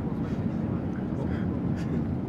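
Steady low rumble of an airliner's cabin as the plane rolls along the runway on its wheels, with faint voices in the cabin.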